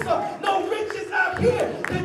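A preacher shouting his sermon into a microphone in a hoarse, chant-like delivery, the words hard to make out.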